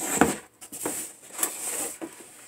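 Cosmos Audio EP-7600.1 car amplifier set down in its cardboard box with a dull thump, followed by rustling and light knocks of cardboard and paper being handled as the owner's manual is pulled out.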